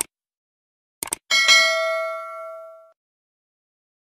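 Subscribe-button animation sound effect: a quick mouse click at the start and a double click about a second in, then a single bell ding that rings out and fades over about a second and a half.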